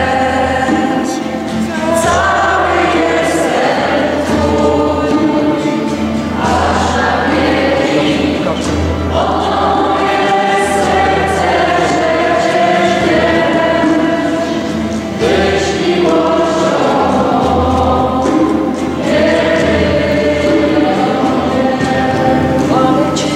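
A church congregation and a choir singing a hymn in phrases, led by a woman's voice over acoustic guitar strumming.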